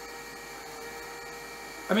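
Cheap unbranded robot vacuum cleaner switched on and running while held off the floor: a steady electric motor hum with a constant tone, its side brush spinning. It seems to have very little suction.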